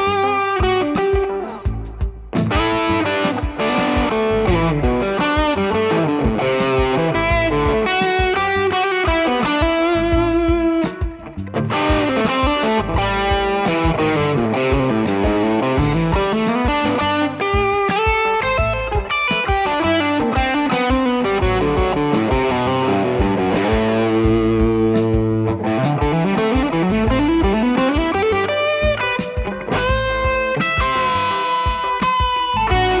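Electric guitar playing fast minor-pentatonic lead lines, with quick runs climbing and falling in pitch, over a backing track with a steady beat. There are short breaks about two seconds in and again near eleven seconds.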